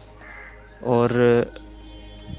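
A man's voice drawing out a single word ('aur', 'and') as a long hesitation, over a quiet steady background music bed.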